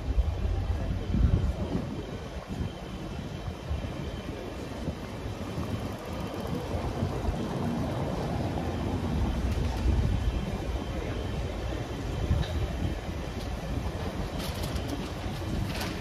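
Outdoor city street ambience: a steady low rumble of traffic and street noise, with a few sharp clicks near the end.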